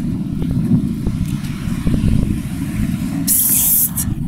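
City street noise: a steady low rumble of traffic with a few faint knocks. A short burst of loud hiss comes near the end.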